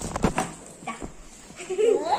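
A quick cluster of knocks and rustles as a school backpack is opened and handled, and a single click about a second later. A child's voice starts near the end.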